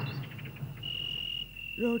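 Crickets trilling, a high steady trill that breaks off and resumes every second or so.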